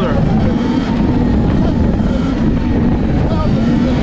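Wind rushing over the microphone of an electric Sur-Ron dirt bike riding along a road, with a faint wavering hum underneath.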